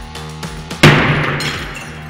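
A 2 kg brick striking a P2 laminated safety glass pane (two 4 mm sheets with two foil interlayers) with a sudden loud smash about a second in. The glass cracks with a crackling, ringing tail that dies away over about a second, all over background music.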